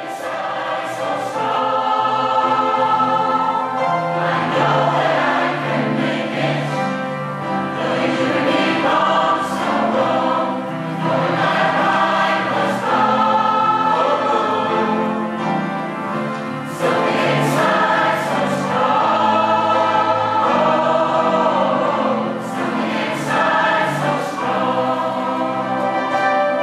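A large mixed community choir of men and women singing together in harmony, many voices sustaining and moving between chords.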